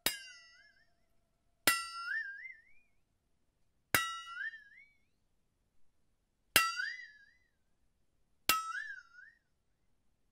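Five sharp strikes on a bell-like metal percussion instrument, irregularly spaced, each ringing for about a second with a tone that wavers up and down in pitch as it fades.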